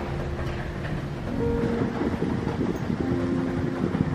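A loaded collapsible utility wagon rolling steadily along a hallway floor on its plastic wheels, giving a continuous low rumble.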